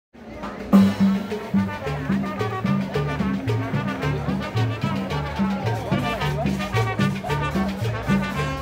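Lively brass-band music: brass over a bouncing bass line that steps between a few notes on a steady beat, with drums.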